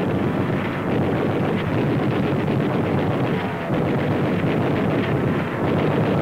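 Steady, noisy roar of a dubbed aircraft-engine sound effect on an old newsreel soundtrack, with no clear pitch and an even level.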